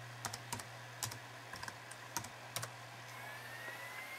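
Typing a password on a PowerBook G4 laptop keyboard: about ten irregular, soft key clicks over the first two and a half seconds, then stopping. A low, steady hum runs underneath.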